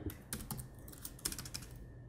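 Faint, irregular keystrokes on a computer keyboard: a handful of separate key clicks.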